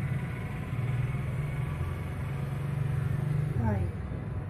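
A steady low rumble, like an engine idling, runs throughout, with a voice saying a single letter just before the end.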